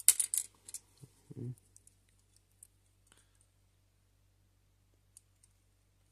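Small clicks and scrapes of plastic scale-model parts being handled as a thin plastic exhaust cross-pipe is worked into place on a 1:12 motorcycle model. The clicks cluster in the first second, a short low sound follows about a second and a half in, then only a few faint ticks.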